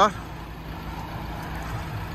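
Ford Transit Custom's 2.2 TDCi four-cylinder diesel idling: a steady low rumble with a constant hum.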